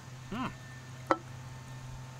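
A man's appreciative "mmm" while tasting, then a single sharp knock about a second in as an aluminium beer can is set down on a wooden table, over a faint steady low hum.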